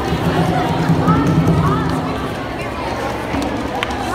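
Many hand drums beaten together by a group in a dense rhythm, with voices shouting and calling over them.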